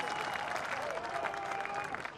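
Cricket crowd applauding the fall of a wicket, a steady spread of clapping.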